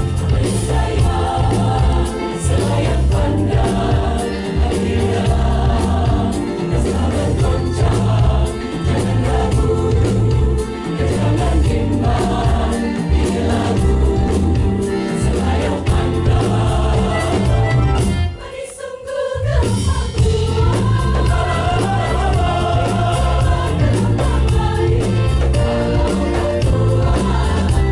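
Mixed choir of men's and women's voices singing a Malay-style (langgam Melayu) song over band accompaniment with a steady beat in the bass. The music breaks off briefly about eighteen seconds in, then carries on.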